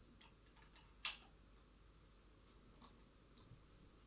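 Near silence, broken by a few small clicks, the sharpest about a second in and fainter ticks scattered through the rest.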